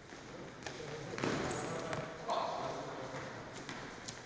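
Futsal being played in a reverberant sports hall: the ball is kicked and bounces on the wooden floor in a few sharp thuds, players call out, and shoes give a couple of short high squeaks.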